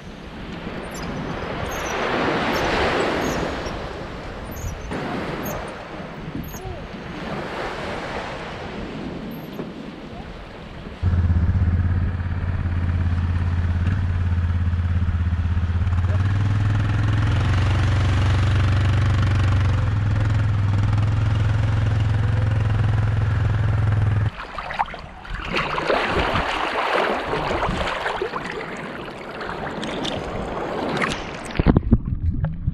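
Small waves washing up on the sand, then a quad bike engine running steadily and loudly for about thirteen seconds with a deep low hum, starting and cutting off abruptly, followed by the wash of the sea again.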